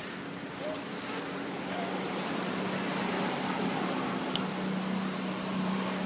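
Steady outdoor background noise with a low steady hum under it, and a couple of faint short squeaks in the first two seconds. A single click about four seconds in.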